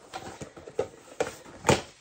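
A small cardboard gift box being opened and handled: a few light scrapes and taps, the loudest near the end.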